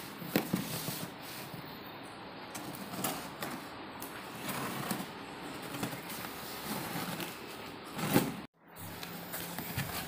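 Scissors cutting through plastic packing tape on a cardboard shipping box, with the tape crackling and the cardboard scraping and rustling as the flaps are pulled open; the sound cuts out for a moment near the end.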